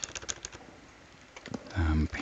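Computer keyboard typing: a quick run of key clicks in the first half-second, then fainter scattered keystrokes, with a man's voice starting near the end.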